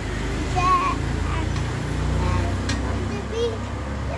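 Short, broken snatches of a young child's voice over a steady low rumble.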